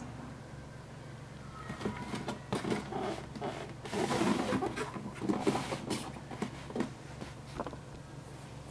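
Hands handling a cardboard shoe box holding sneakers: irregular rustling and scraping with small knocks, loudest midway, over a steady low hum.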